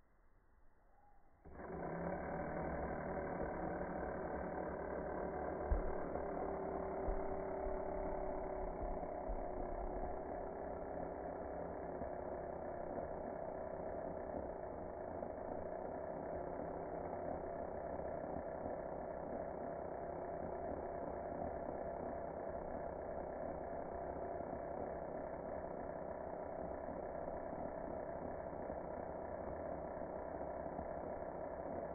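An electric power tool's motor starts about a second and a half in and runs steadily at a constant pitch, with a few low knocks in the first part.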